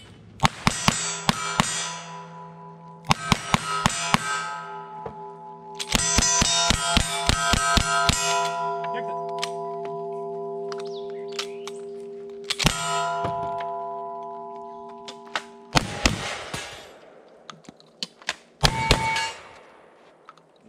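A shot-timer beep, then two quick strings of about five revolver shots, each hit answered by steel plates ringing on. A faster string of lever-action rifle shots follows, the steel still ringing, and near the end come a few shotgun blasts.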